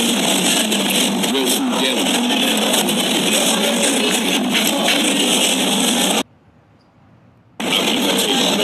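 Loud, noisy restaurant room sound: indistinct chatter under a steady wash of noise. It cuts out suddenly about six seconds in and comes back just before the end.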